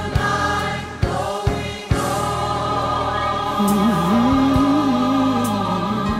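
Gospel music with a choir: voices hold a sustained chord, and a lower voice sings a wavering line over it from about the middle. A few sharp beats sound in the first two seconds.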